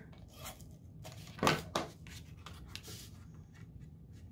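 Cardstock layers being handled and pressed together on a cutting mat: soft paper rubbing, with two short rasping strokes about a second and a half in, then a few light scrapes.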